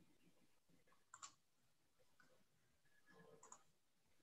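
Near silence: faint room tone with a few soft clicks, one about a second in and a short cluster near the end.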